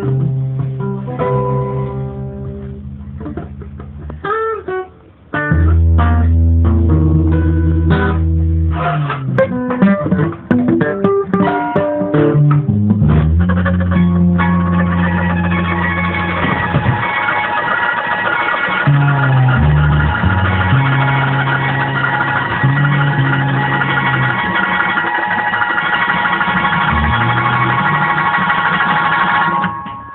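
Acoustic guitars played in a loose improvisation. The first half has low held notes and separate plucked phrases. From about the middle it turns into dense, continuous playing.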